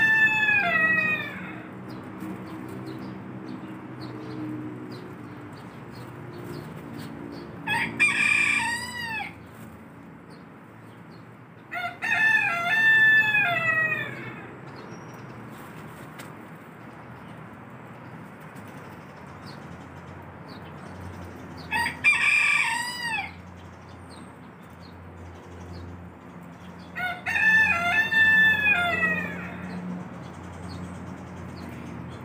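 Rooster crowing: five long crows spaced several seconds apart, over a steady low hum.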